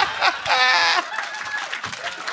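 Laughter, then about half a second in a man's high, squeaky falsetto wail lasting about half a second, followed by softer whimpering: a comic vocal impression of an old man weeping.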